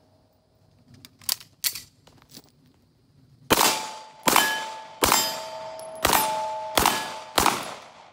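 A Beretta 92A1 9mm pistol fires six shots in quick succession, about three and a half seconds in. Each shot is followed by the ringing clang of a hanging steel plate target being hit.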